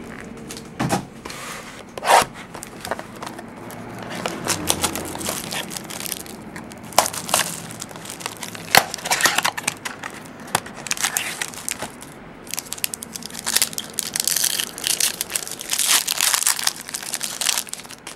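Wrapper of a 2009-10 SP Signature basketball card pack crinkling and tearing as it is opened by hand, with irregular sharp crackles and snaps throughout.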